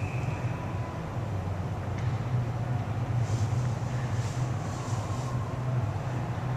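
Ice rink ambience: a steady low rumble fills the arena, with a few faint skate scrapes on the ice a little past the middle.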